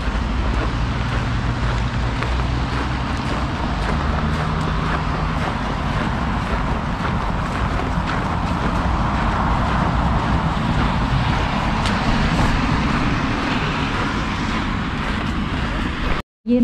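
Steady road traffic noise from passing cars, with a low engine hum for a few seconds in the first half.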